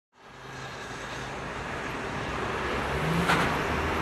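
Street traffic: cars driving along a city road, growing steadily louder as they approach, with the loudest moment just past three seconds in.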